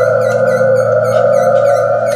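Live experimental folk music: a loud, steady drone of held tones with a fast, even flicker of short high sounds on top, about five a second.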